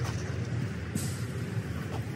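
Steady outdoor background noise: a low rumble with a hiss over it, which brightens for a moment about a second in.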